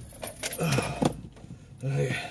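Small rattling and clicking sounds of things being handled, with a couple of short vocal sounds, about two-thirds of a second in and again near the end, from a person who is out of breath and tired out.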